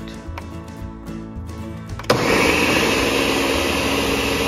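Countertop blender switched on about two seconds in, running steadily at full speed as it blends a passion fruit mousse mixture.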